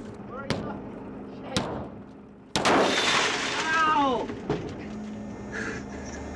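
Two sharp knocks on a car's glass sunroof, then a sudden loud crash that fades over a second or so, with a man shouting and laughing.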